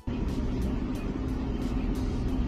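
Steady low rumble of room background noise on a phone recording, with faint light ticks about four times a second.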